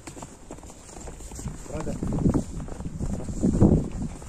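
Footsteps crunching in fresh snow at a walking pace, about two or three steps a second, getting louder in the second half.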